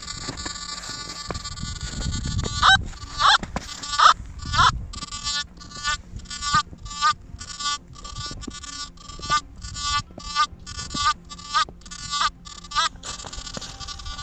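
Nokta Makro Simplex+ metal detector in All Metal mode beeping as its coil is swept back and forth over a Pułtusk stony meteorite: a few wavering tones about three seconds in, then a run of short, regular beeps about two to three a second, the detector's response to the meteorite.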